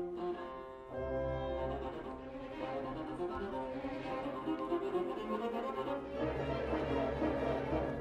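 Orchestral classical music led by bowed strings playing sustained notes. Low strings come in about a second in, and the music swells toward the end.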